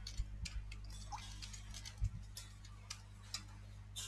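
Computer keyboard keys clicking irregularly as a short terminal command is typed, over a steady low hum.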